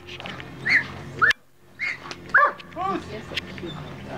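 Doberman whining and yipping while heeling: four short high cries that rise and fall in pitch, the loudest about two and a half seconds in.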